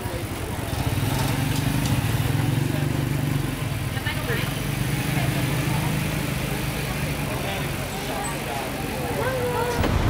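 Busy street sound: a vehicle engine running with a low, steady hum, under indistinct voices of passers-by.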